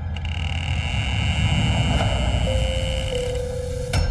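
Low rumbling drone with a held high tone, joined about halfway through by a lower held tone: a suspense cue in the drama's soundtrack.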